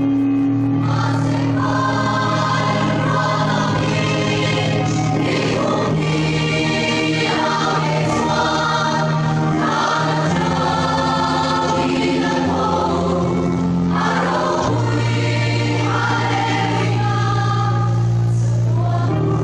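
Mixed church choir of women and men singing a hymn, holding long chords that change every second or two over steady low notes.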